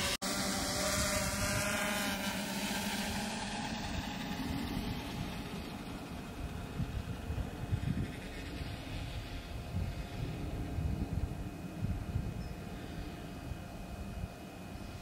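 Yuneec Typhoon H hexacopter's rotors whirring in flight, the tone fading over the first few seconds as the drone flies off into the distance, with gusty wind on the microphone.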